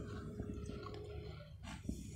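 Faint sounds of a man eating a spoonful of ripe Blenheim Orange melon in a small room, with a faint steady hum that stops about halfway through.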